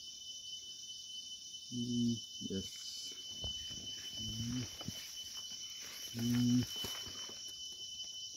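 Steady high chorus of crickets and other insects, with three short, low hums of a voice about two, four and six seconds in.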